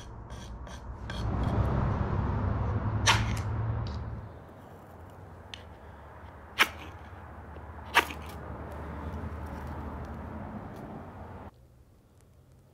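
Spine of an 80CrV2 steel knife scraping a magnesium and ferrocerium fire-starter rod: a rasping scrape in the first few seconds, then three sharp strikes, about three, six and a half and eight seconds in, that throw sparks onto tinder. A low rumble runs beneath and cuts off suddenly near the end.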